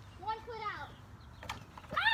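A child's faint drawn-out call, pitched high, early on, then a lull broken by one sharp click about a second and a half in.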